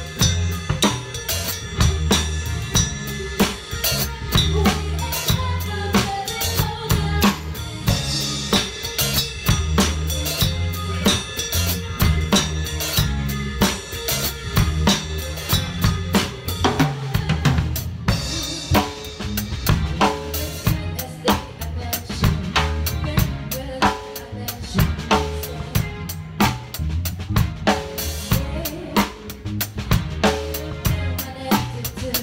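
A drum kit played in a steady, busy groove with SparxStix light-up drumsticks: bass drum, snare with rimshots, and cymbals, along with a backing song carrying a bass line.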